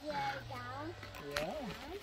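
A man's voice making wordless sounds: a long, low held note, then a short call sliding up and down in pitch, with a single sharp click partway through.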